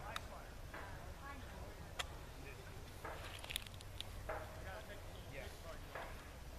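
A few light clicks and taps as muskets are handled and loaded, with faint voices in the background. No shot is fired.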